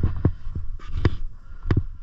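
Skis running over a thin, hard-packed snow cover: an irregular series of low thumps as they bounce over bumps, with a couple of sharper scraping clatters about a second in.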